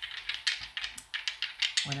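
Small cards being shuffled by hand: a quick, irregular run of light clicks and flicks.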